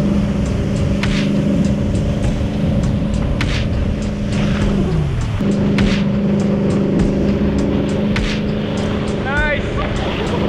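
Towboat engine running steadily under the rush of water and wake spray; about halfway through the engine note drops and falls in pitch briefly, then comes back to its steady note.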